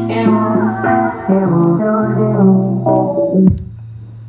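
A track played out of a DJ controller: a plucked-string melody over a held bass note. It cuts off suddenly about three and a half seconds in, leaving a low hum.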